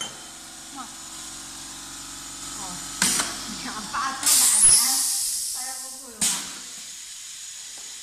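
Pneumatic piston paste filler cycling: a sharp clack about three seconds in, then a loud hiss of exhausted air from just after four seconds that fades over a second or so, and another clack just after six seconds. A steady low hum runs under the first three seconds.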